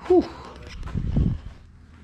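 A man's exhaled "whew", falling in pitch, then a brief low rumble about a second later.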